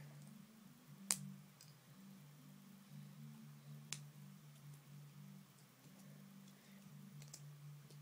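Near silence: a faint low steady hum, broken by a sharp click about a second in and a smaller one near four seconds.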